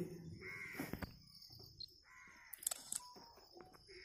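Faint bird calls, a few short caws about half a second in and again just past the middle, over quiet outdoor background.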